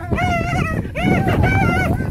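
A run of high-pitched whimpering cries, each rising and then falling in pitch, about four in two seconds.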